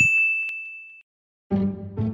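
A single bright electronic ding, the chime of an animated logo, that rings and fades out over about a second. After a short silence, music begins about three-quarters of the way through.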